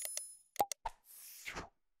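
Sound effects of an animated subscribe-button end screen. A short bell-like ding rings and fades at the start, two quick click-pops follow about half a second in, and a whoosh swells and dies away near the end.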